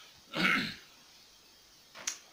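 A man clears his throat once, briefly, about half a second in, followed by a short click near the end.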